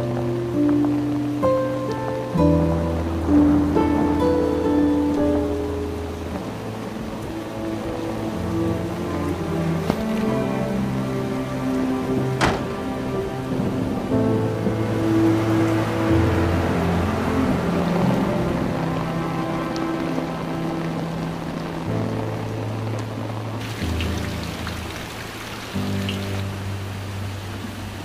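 Slow background music with held notes over steady heavy rain; the rain swells louder in the middle.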